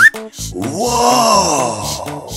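Upbeat children's background music with a steady beat. A quick rising whistle ends the moment it begins, then a comic groaning 'ohhh' sound effect rises and falls in pitch for about a second and a half.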